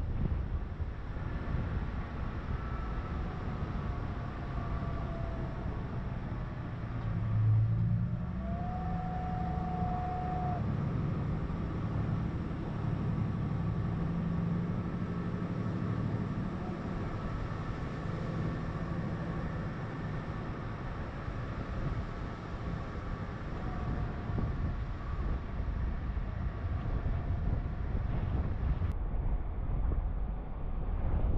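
Steady low wind rumble on the microphone of a camera riding along a road. From about seven seconds in to about seventeen seconds a motor vehicle's engine hums over it, loudest at the start.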